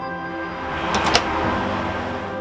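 Soft background music with long held tones; about a second in, an apartment front door swings shut with a brief rush and two sharp clicks as the latch catches.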